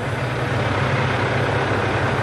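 Tractor engine running steadily with a low, even drone.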